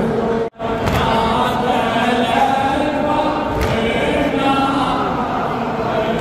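A crowd of men chanting a Muharram lamentation (latmiya/noha) for Imam Hussain, a melodic line sung together by many voices. The sound cuts out for an instant about half a second in.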